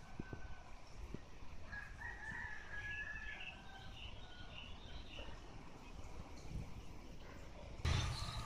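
Faint outdoor ambience with a drawn-out bird call starting about two seconds in and lasting a few seconds. A couple of low bumps come near the start.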